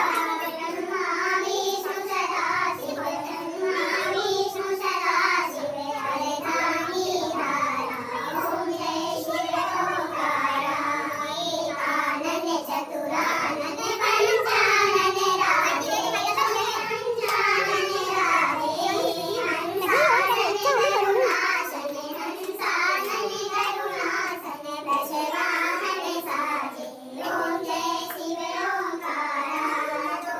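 A group of women singing a devotional song together, a continuous sung melody with no pauses.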